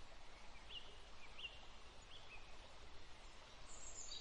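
Faint woodland ambience: a low steady hiss with a small bird chirping three times, evenly spaced, then a thin higher twittering starting near the end.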